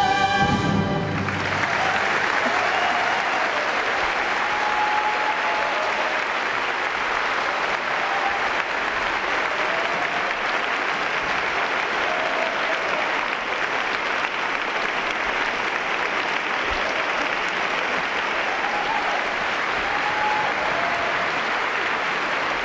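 The held final note of voices and orchestra cuts off about a second in, and a large audience applauds steadily, with scattered cheers.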